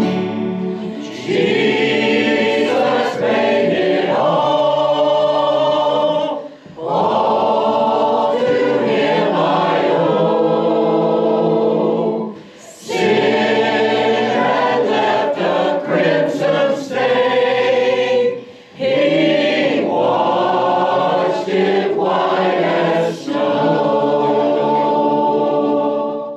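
Small mixed choir of men and women singing a Christian worship song, accompanied by electric guitar. The singing comes in long phrases of about six seconds, each ending in a brief break.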